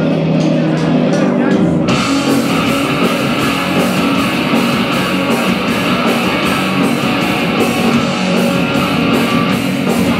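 Live rock band playing an instrumental intro on electric guitars, bass guitar and drums. Held guitar tones open it, and about two seconds in the full band comes in with a steady beat of cymbal hits.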